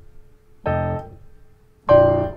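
Piano chords on a digital stage piano: one chord struck about two-thirds of a second in and left to ring and fade, then another struck near the end. After the B7 just before, this resolves the progression back to the one chord, B-flat major seven.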